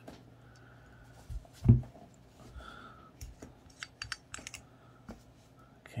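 Black screw cap being twisted off a glass aftershave bottle: a string of small sharp clicks and scrapes from the cap and glass, with one low thump about a second and a half in, the loudest sound.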